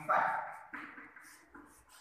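A short voiced sound right at the start that fades within half a second, then quieter chalk strokes and scratches on a blackboard as a line of writing is made.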